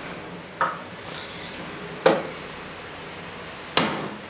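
Three sharp knocks made by hand at a gallery wall, about a second and a half apart.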